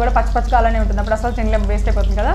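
Speech: a woman talking, over a steady low hum.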